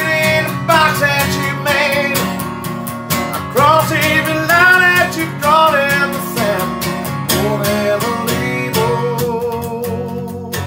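A man singing the chorus of a country song over a strummed steel-string acoustic guitar, ending on a long held note.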